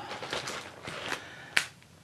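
Light handling noises of gel pens in their plastic packet: faint rustling and small ticks, with one sharp click about one and a half seconds in.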